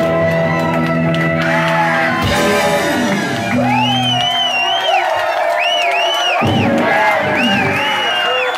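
Live rock band holding a final chord, which drops away after a few seconds, while the crowd shouts and whoops in repeated rising-and-falling calls.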